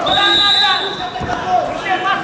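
Voices calling out in a large hall during a wrestling bout, with a dull thud on the wrestling mat about a second in. A steady high tone is held for about the first second.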